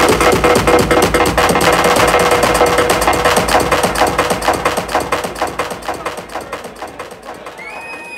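Electronic dance music from a DJ set, played loud with a fast, steady beat. Over the last couple of seconds the bass thins out and the music drops in level.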